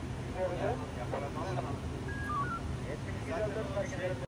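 Steady low hum of an idling vehicle engine under scattered background voices, with a few short electronic beeps a little past halfway.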